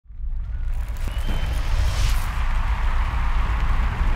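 Intro sound effect: a deep, continuous rumble with a hissing whoosh that swells about two seconds in.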